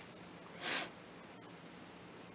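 A single short sniff from a person, about half a second in, against quiet room tone.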